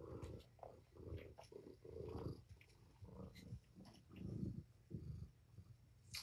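Kitten purring faintly, in low rumbling spells of about half a second that break off and start again with each breath. A few light clicks are scattered through it.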